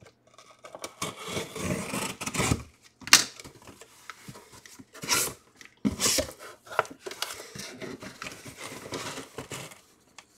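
Cardboard shipping box being handled and opened by hand: irregular bursts of tearing, scraping and rubbing of tape and cardboard, with a sharp knock about three seconds in.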